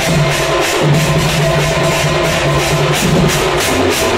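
Live Odisha singha baja band playing: a rack of mounted drums beaten with sticks and large hand cymbals clashing in a fast, even beat, over a held, slowly changing melody line.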